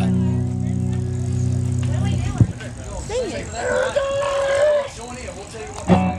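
Amplified electric guitar and bass chord held and ringing steadily, then cut off with a sharp click about two and a half seconds in. Voices follow, including one high held voice.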